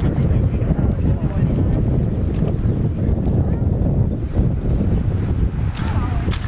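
Wind buffeting the microphone outdoors, a loud, steady low rumble that covers the scene, with faint voices of people walking under it.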